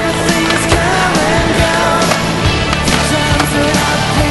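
Skateboard wheels rolling on asphalt under a rock music soundtrack.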